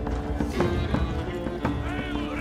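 A horse walking, its hooves clopping at a steady pace, under a film score of low sustained notes. Near the end there is a brief wavering call.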